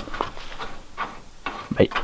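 A hand fumbling under the front edge of a car's bonnet for the release catch, making a few light clicks and knocks.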